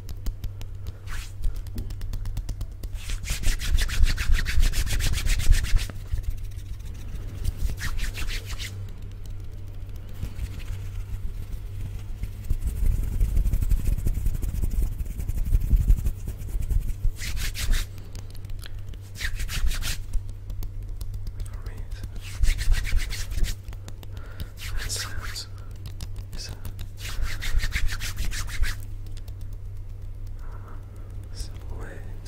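Bare hands rubbing together right at a condenser microphone, in bursts of dry swishing a second or two long. Around the middle the sound turns to a low, muffled rumble as the hands pass over the top of the microphone grille.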